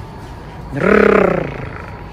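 A woman's voice gives one short, rough growling roar about a second in, mimicking a tiger.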